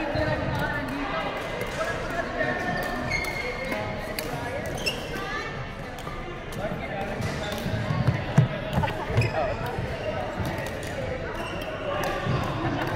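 Badminton rally in a sports hall: racket strikes on the shuttlecock and players' footsteps on the wooden court floor, with voices in the background and a loud thump about eight seconds in.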